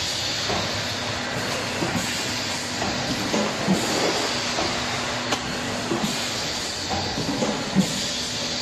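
Vertical pouch-packaging machine with a pump filler for liquid sauce running: a steady mechanical noise with air hiss and a faint hum, broken by scattered short knocks. The loudest knocks come about four seconds apart.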